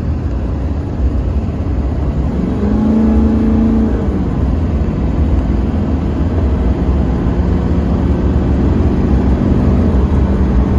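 2001 Duramax LB7 6.6-litre V8 turbodiesel pulling under load, heard from inside the cab, with a steady low rumble. Its pitch climbs about two and a half seconds in, holds for about a second, then falls back. The wastegate actuator hose is disconnected, so the turbo is running to its maximum boost.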